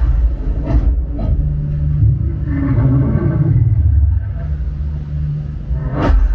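Action-film sound effects played loud through a Sonos Arc soundbar and Sonos Sub: a deep, continuous bass rumble with two sharp hits in the first second and a half, and a wavering mid-pitched sound around the middle.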